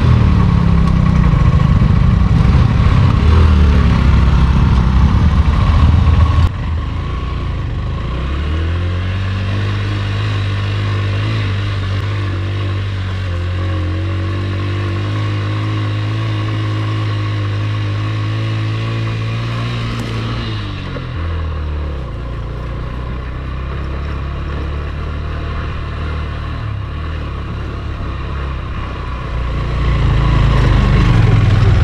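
Motorcycle engine running under load on a rough uphill dirt track: loud and rough for the first six seconds, then after a sudden cut quieter, with a steady engine note held for about twelve seconds before it drops in pitch.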